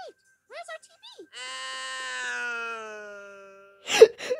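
Cartoon episode soundtrack: a few short voiced character syllables, then one long held tone that sinks slightly in pitch and fades out over about two and a half seconds. A sudden loud hit comes right at the end.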